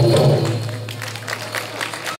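A live ensemble song ends on a held low note that fades down and lingers softly. Scattered audience clapping starts about a second in.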